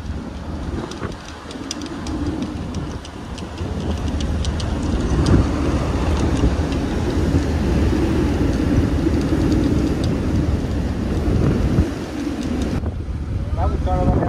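Wind buffeting the microphone on a ferry's open deck at sea: a loud, uneven rush and low rumble with scattered crackles, over the sound of the ship's wake. The sound changes about a second before the end.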